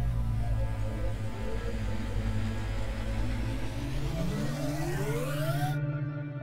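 Cinematic transition sound effect for a section title card: a dense, low synthesized drone, with a tone rising in pitch over the last two seconds before the whole sound cuts off abruptly.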